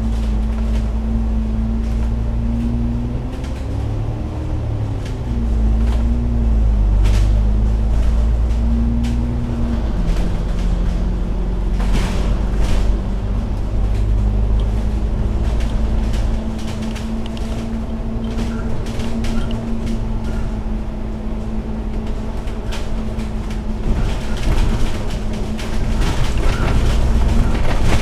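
Alexander Dennis Enviro500 MMC double-decker bus running on the move, heard from inside: a low rumble with a droning engine note. The note rises and falls in the first ten seconds, drops about ten seconds in, then climbs slowly. Occasional sharp clicks and rattles sound over it.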